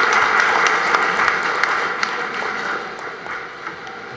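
Audience applauding, a dense patter of hand claps that thins out and dies down over the last second or two.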